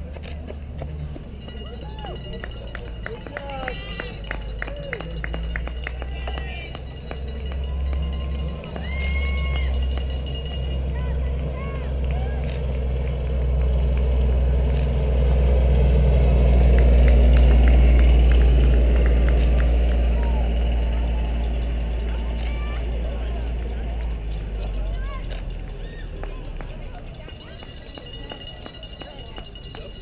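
A side-by-side utility vehicle's engine running as it approaches and passes, swelling to its loudest a little past halfway and then fading away, with distant voices in the background.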